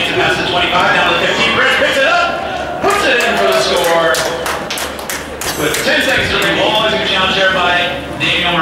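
A man talking indistinctly, with a run of sharp knocks from about three to five and a half seconds in.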